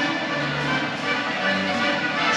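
Music playing in the exhibition hall, a slow piece of long held notes that change pitch step by step.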